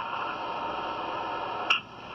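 A steady hiss lasting about a second and a half, cut off by a sharp click.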